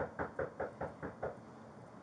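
Knuckles knocking on a front door: a quick run of about seven even raps that stops about a second in.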